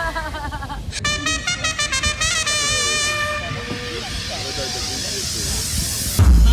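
Voices over music, with a loud run of pitched tones stepping up and down in pitch from about one to three seconds in.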